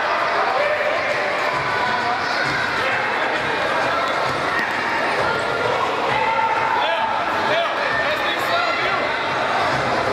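Futsal game sounds in an echoing sports hall: players and spectators calling out over one another, with the ball bouncing and being kicked on the court.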